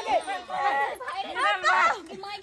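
Several people crying out and lamenting at once in distressed voices, talking over one another, loudest near the end.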